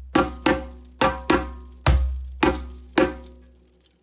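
Djembe played with bare hands: a slow, repeating rhythm of about eight strokes, with a deep bass stroke about two seconds in that booms on beneath sharper, higher strokes. The phrase breaks off in a short pause near the end.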